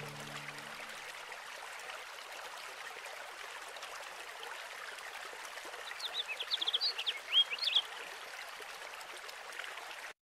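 Steady trickle of a flowing stream, with a bird calling in a quick run of short chirps about six seconds in.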